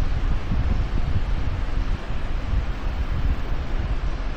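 Steady low rumbling noise with a fainter hiss above it, as of wind or air rushing on the microphone, and no speech.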